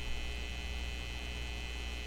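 Steady electrical mains hum with faint, steady high-pitched whine tones over it.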